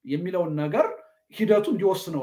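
A man speaking in two phrases with a short pause between them.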